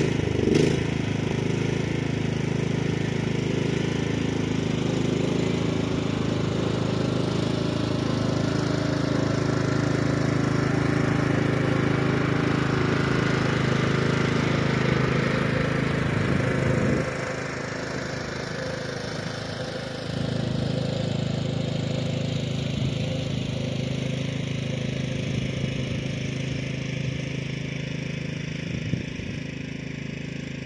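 Lawn tractor's small engine running steadily while towing a box trailer across the grass. The level dips for about three seconds just past the middle.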